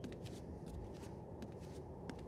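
Faint, steady low background noise with scattered, irregular small clicks and crackles.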